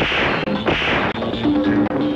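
Dramatic film background music: a few loud percussive crashes, roughly one every half second to second, over held sustained notes.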